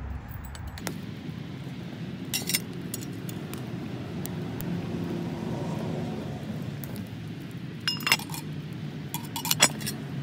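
Wood campfire burning with a steady rush and small crackles. A few sharp metallic clinks ring out: one about two seconds in and two more near the end.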